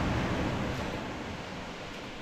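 Steady wind and surf noise on an open beach, easing slightly over the two seconds.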